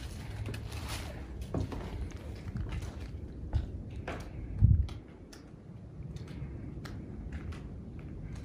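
Footsteps and scuffs on the floor of an empty wooden cabin, with scattered light knocks and one heavier thump a little past halfway.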